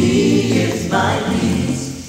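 Choir music: many voices singing together in a gospel praise style over steady low bass notes, with a change of chord about a second in.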